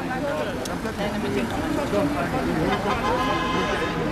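Voices talking over city traffic passing on a busy road, with a short, steady high tone held for under a second about three seconds in.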